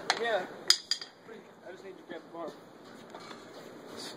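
Two sharp metallic clinks less than a second apart, the first one ringing: steel suspension parts knocking together as a steering knuckle comes off a car.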